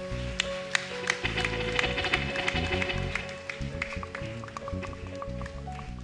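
Live church praise music: held keyboard and bass notes with repeated sharp percussive taps.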